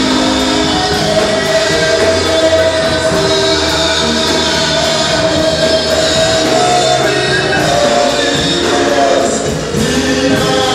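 Live Ghanaian gospel praise music: voices singing with instrumental accompaniment, loud and continuous, with long held notes.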